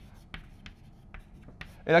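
Chalk writing on a blackboard: a string of short, sharp taps and scratches as the strokes are made, a few each second.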